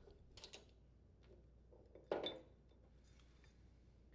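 Faint metal handling of a Honda HRR2167VXA mower's lower rotostop assembly as it is unbolted and pulled off the blade shaft: a few light clicks about half a second in, then one short metallic clink with a brief ring about two seconds in.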